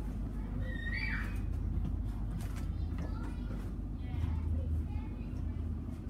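Steady low rumble and hum inside a suburban train carriage, with faint chatter from other passengers. A brief high-pitched sound comes about a second in.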